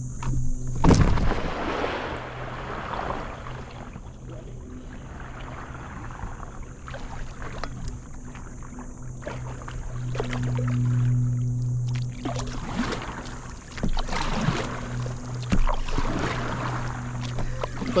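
A loud thump and splash about a second in as a person lands on an inflatable stand-up paddleboard, followed by paddle strokes dipping and splashing in the water at an irregular pace. A steady low hum runs underneath, strongest about halfway through.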